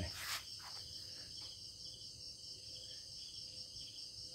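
Insects chirring steadily in the background, a continuous high-pitched drone with a faint pulsing trill beneath it. There is a brief rustle just after the start.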